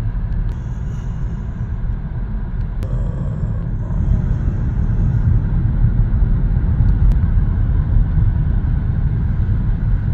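Steady low rumble of engine and tyre noise inside a moving car's cabin, a little louder from about four seconds in.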